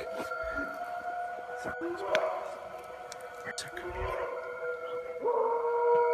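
Howl-like calls of an unidentified animal: short rising wails about two and four seconds in, then one long held howl near the end. They are voices that don't really sound human and sound more like a Bigfoot. A steady hum of several tones runs underneath.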